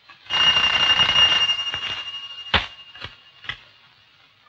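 Electric telephone bell ringing steadily for about two seconds, then a sharp knock and a couple of lighter clicks as the receiver of a candlestick telephone is picked up.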